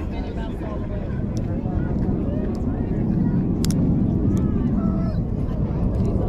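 Steady low outdoor rumble with faint distant crowd voices, and a few light clicks from a lock pick working the pins of a Federal SS Series 720 padlock.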